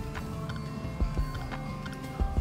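Background music with steady held tones, and a few short low thumps about a second in.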